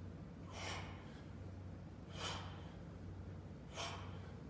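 A man's short, forceful exhalations, three in four seconds, one with each squat rep as he works out, over a steady low hum.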